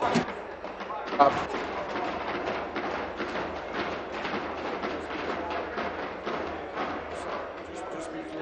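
Division bells ringing steadily: the five-minute bell calling members in for a vote. A murmur of voices runs underneath.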